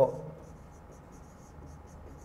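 Marker pen writing on a whiteboard: a series of short, faint squeaky strokes of the felt tip as words are written.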